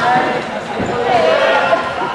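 Players' voices calling out across a sports hall, with a handball bouncing on the court floor a couple of times.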